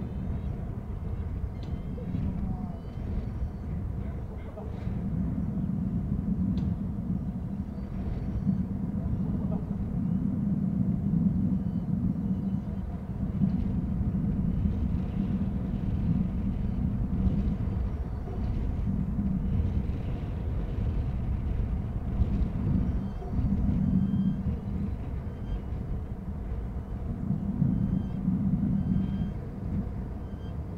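A steady low rumbling background noise that swells and eases every few seconds. Faint, short, high bird chirps are scattered through it.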